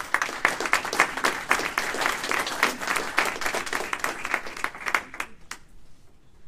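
Audience applauding: a dense run of hand claps that thins out about five seconds in, ending with a few last claps.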